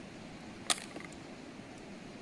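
A single sharp click about two-thirds of a second in, followed by a couple of fainter ticks, over a faint steady hiss.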